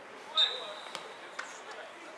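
A football being kicked on a grass pitch: a sharp knock about half a second in, with a short high steady tone over it, then a few lighter knocks, amid faint players' voices.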